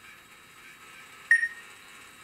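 A single short electronic beep just over a second in, one clear high tone that dies away quickly. It comes from the robot's voice-control system, sounding between a spoken command and its synthesized reply.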